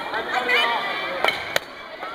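Two sharp smacks of sports-chanbara soft air-filled short swords striking, about a second and a half in, a few tenths of a second apart, with children's voices before them.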